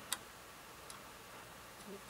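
A sharp click from handling the enlarger equipment, then a much fainter tick about a second later, in an otherwise quiet room.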